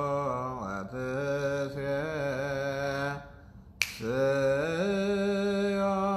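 A man's solo voice chanting a Ge'ez liturgical prayer in long, slowly wavering held notes. The chant breaks off a little after three seconds, a single sharp click comes just before four seconds, and then the chanting resumes.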